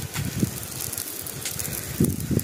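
Dry grass and banana plants burning, with scattered crackles over a low, uneven rumble.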